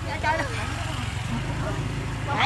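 Low, steady hum of an idling motor vehicle engine in street background, with faint scattered voices over it.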